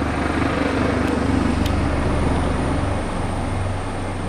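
A helicopter overhead, its rotor making a steady low drone with fast, even beating, a little quieter near the end.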